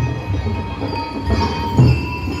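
Marching band music: drums beating about twice a second, with bell-like notes ringing over them.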